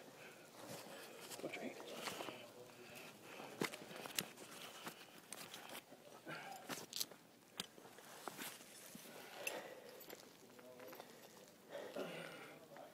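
Faint rustling of rope and metal rigging gear being handled, with a few sharp clicks in the middle of the stretch, and distant indistinct voices.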